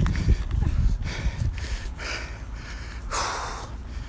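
A man breathing hard after jumping exercise, with one loud, close exhale into the phone's microphone about three seconds in. Low rumble from the phone being handled early on.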